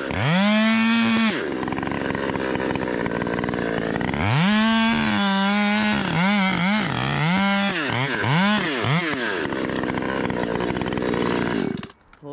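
Two-stroke chainsaw cutting maple limbs in two runs at full throttle, dropping to idle between them. In the second cut the engine note dips and recovers several times as the chain loads in the wood. The sound cuts off suddenly near the end.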